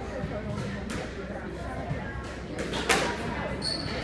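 A single sharp smack of a squash ball about three seconds in, with a fainter knock earlier. Near the end comes a brief high squeak, like a court shoe on the hardwood floor.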